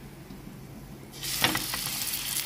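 A slab of paneer laid onto a hot, oiled ridged grill pan. After about a second of faint hiss, the oil starts to sizzle steadily as the cheese touches it, with a light knock as it lands.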